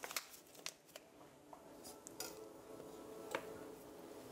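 Faint kitchen handling sounds: a few light clicks and taps of a pan and utensils, with a faint steady hum beneath from about halfway.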